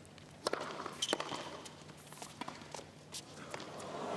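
Tennis ball struck with a racket: a sharp serve hit about half a second in, a return hit about half a second later, then lighter ticks of the ball and players' feet on the hard court. Applause begins near the end.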